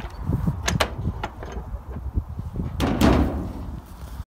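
Wooden dog box on a trailer being shut on a greyhound: a few sharp knocks in the first second or so, then a louder bang and rattle near three seconds in.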